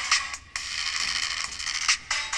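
Music playing through the small speakers built into an Atari hat, thin and tinny with no bass.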